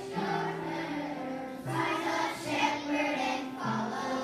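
Children's choir singing in phrases with held notes, accompanied by an upright piano.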